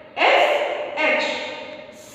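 A woman's voice speaking two drawn-out words or syllables, about a second apart, each fading away.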